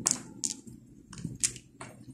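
Pearl beads clicking against each other as they are handled and slid down a fishing line: several light, sharp clicks at uneven intervals.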